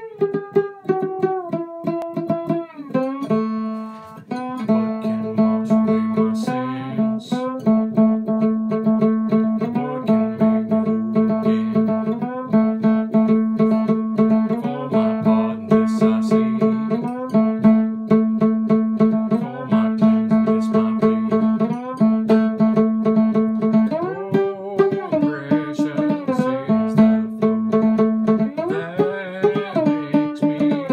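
Homemade one-string diddley bow with a cheese-straw tin body, plucked in a quick steady rhythm. The player slides up and down the string between notes, coming back again and again to one low note.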